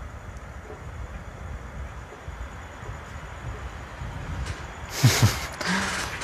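A pause in a man's talk filled by a low, steady background rumble, with a short rush of noise about five seconds in and a brief voice sound as the talk resumes.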